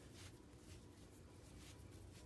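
Near silence, with faint soft rustling of bulky yarn being looped onto a wooden knitting needle during a long-tail cast-on.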